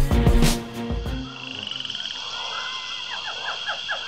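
Backing music with drums and bass cuts off about a second in. A frog chorus follows: repeated short calls, several a second, over a steady high trill.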